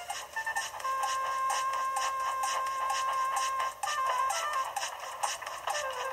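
Background music from the television soundtrack: a long held note over a steady beat. It sounds thin and tinny, with no bass, as it comes through a TV speaker.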